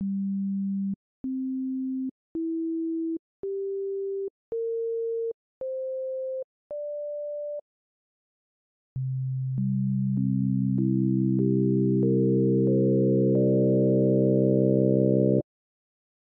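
Additive-synthesis demonstration: the harmonic partials of one note played as pure sine tones, one at a time, each short steady tone a step higher than the last. After a pause they are stacked one by one on the low fundamental, building into a single fuller sustained tone that cuts off suddenly near the end.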